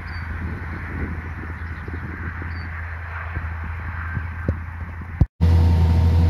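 Distant farm tractor pulling an anhydrous ammonia applicator across a field: a low, steady drone with a couple of faint high chirps over it. Near the end it cuts to the much louder, steady engine drone heard inside a tractor cab.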